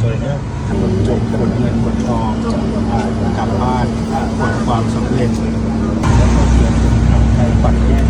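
People talking in Thai over a steady low hum from the car, with a louder low rumble from about six seconds in.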